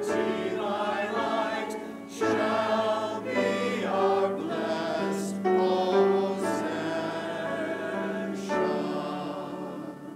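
Congregation singing a hymn together, holding long notes. The singing dies away near the end as the hymn finishes.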